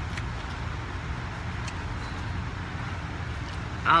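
Steady outdoor background noise with a low rumble, heard through a phone's microphone, and two faint ticks.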